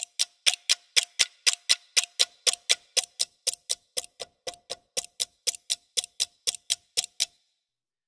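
Sampled pocket-watch ticking played as a loop, even sharp ticks about four a second, each with a faint short ring. The ticking stops about seven seconds in.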